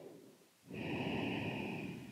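A woman's long audible breath, starting a little under a second in and lasting about a second and a half, as she holds a deep forward fold.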